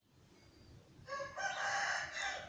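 A rooster crowing, starting about a second in: a short lower note, then a longer held higher note that carries on past the end.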